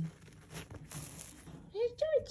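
Soft rustling and scuffing of a quilted blanket and fleece bedding as an opossum burrows under it, with a few scratchy scuffs around the middle.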